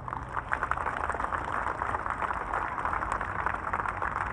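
Audience applauding, a dense crackle of many hands clapping, after a tap-dance number ends.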